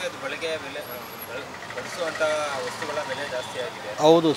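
Softer voices talking over a steady background of street traffic noise.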